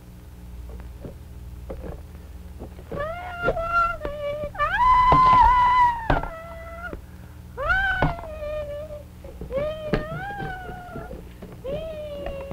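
A puppeteer's voice giving a baby dragon puppet wordless, squeaky babbling calls, each rising and then levelling or falling, with the longest held about a second and a half near the middle. Light knocks of toy blocks being pushed about run under the calls.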